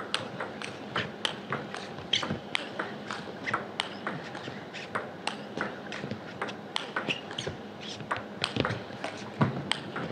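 A long table tennis rally: the ball clicks sharply off rackets and the table in quick alternation, about three hits a second without a break.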